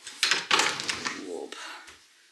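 A wooden roof window being unlatched at its top handle bar and pushed open: a click just after the start, then about a second of clattering and rushing noise as the sash swings out.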